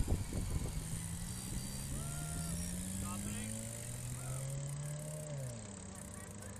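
A motor vehicle's engine accelerating, its pitch rising slowly for several seconds and dropping suddenly near the end as at a gear change. It sits over a steady haze of wind and road noise.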